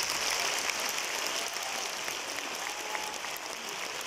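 Applause from a large audience: dense, even clapping that eases slightly toward the end.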